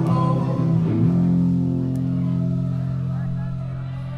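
Live rock band with electric guitars and bass; about a second in they hit a chord and let it ring, the held chord slowly fading.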